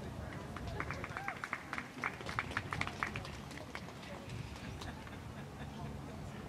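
Brief scattered applause from a few spectators: irregular light handclaps for about two seconds, starting about a second in, over faint voices.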